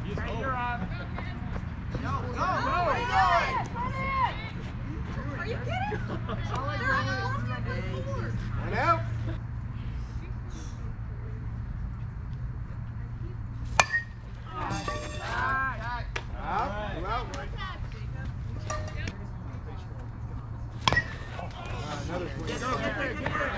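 Players and spectators calling out across a softball field, over a steady low hum. Near the end comes a single sharp crack: a bat hitting the softball, with the batter starting for first. An earlier, smaller click comes about two-thirds of the way in.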